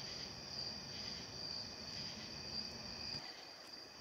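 Faint, steady high-pitched whine over a low hiss, with no speech or music.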